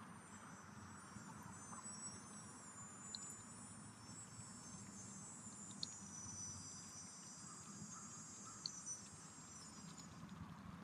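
Faint, steady, high-pitched trilling of insects, with three soft ticks spread through it.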